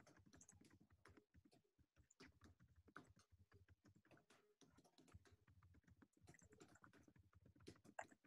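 Faint typing on a computer keyboard: a continuous run of quick, irregular key clicks.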